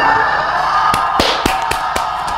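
A live concert crowd cheering as the song ends, with about five sharp hand claps close to the microphone from about a second in.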